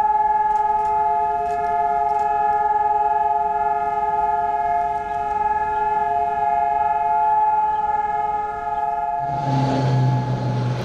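Israeli national mourning siren sounding one long, steady chord of several tones, held without any rise or fall: the nationwide siren for fallen soldiers on Memorial Day. Shortly before the end a broad rushing noise with a low hum comes in under it.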